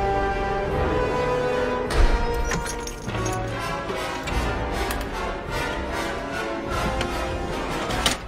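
Film score music with sustained held notes, a heavy low hit about two seconds in, and then a run of sharp clicks and knocks over the music.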